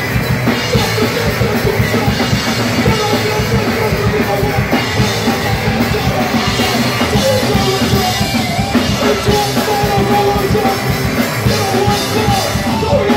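Live rock band playing loudly and without a break: electric bass and drum kit in a dense, continuous wall of sound, heard from within the crowd.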